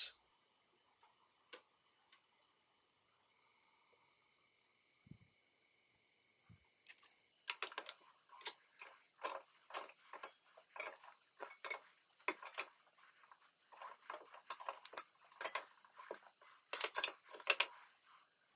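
Thin sheet steel and pliers clinking and creaking in quick, irregular clicks as a laser-welded steel angle clamped in a bench vise is bent with pliers to stress-test its continuous weld. The first several seconds are almost silent, the clicking starting about seven seconds in.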